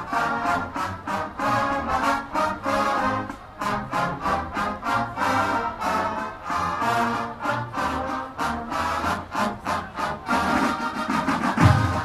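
Brass marching band music over a fast, even drum beat. Heavier low drum hits come in near the end.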